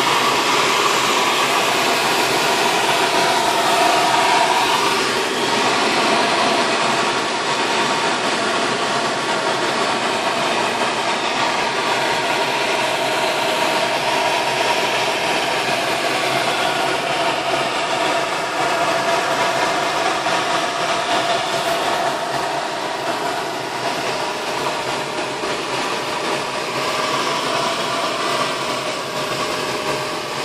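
Steady rush of air over a glider's canopy and through its open cockpit vent in flight, with a faint steady whistle in it.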